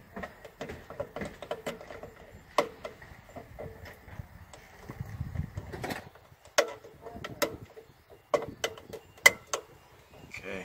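Irregular sharp clicks and knocks of a plastic fuel pump and fuel-level sender assembly being fitted back together by hand, its parts pressed and snapped into place. The loudest click comes near the end.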